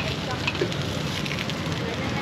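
Steady hiss and crackle of num kruok batter cooking in round multi-cup pans over a charcoal fire, with scattered small pops.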